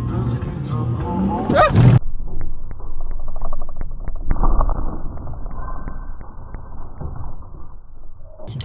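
A car horn honking in the first two seconds, then muffled, steady road noise with a run of faint clicks.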